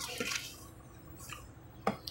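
Tarot cards sliding and rustling softly as a card is picked out of a spread on a stone tabletop, with one sharp tap near the end.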